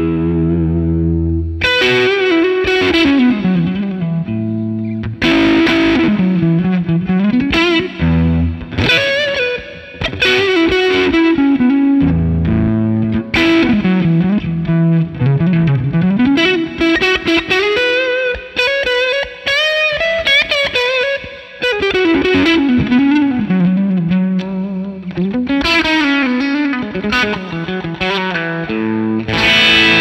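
Electric guitar (Fender Stratocaster) played through a Benson Preamp overdrive pedal into a Fender '65 Twin Reverb amp, set to a mellow drive tone with the bass turned up a little. The playing moves between chords and single-note lead lines with string bends and vibrato.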